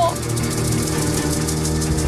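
Dramatic background music: sustained low held tones and a drone under a fast, pulsing high texture.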